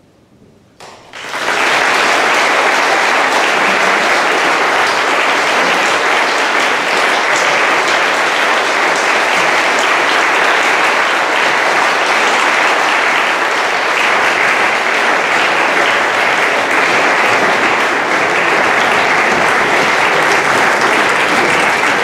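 Audience applauding: a large crowd's steady clapping that starts about a second in, after a brief hush.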